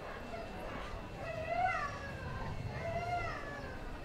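A dog whining: two short, high-pitched whimpers that rise and fall in pitch, over a low background rumble.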